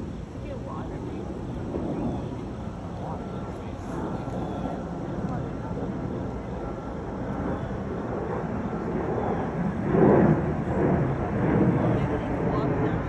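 People talking indistinctly in the background over a steady low rumble, the voices getting louder toward the end and loudest about ten seconds in.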